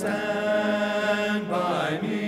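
Men's choir singing an African-American spiritual in close harmony. The voices come in together at the start on a held chord and move to a new chord about one and a half seconds in.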